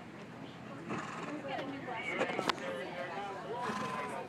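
People talking in the background, with a single sharp click about two and a half seconds in.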